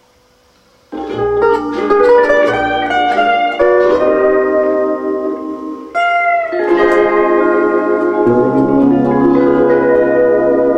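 Double-neck Fender Stringmaster steel guitar played with a steel bar in Hawaiian style, starting about a second in: a run of picked notes and chords, then a new chord struck about six seconds in with a short slide, left ringing.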